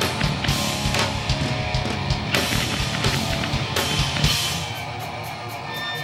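Hardcore band playing live in an instrumental passage: distorted electric guitars, bass and drum kit with regular drum and cymbal hits. The playing eases off a little near the end, just before the vocals come back in.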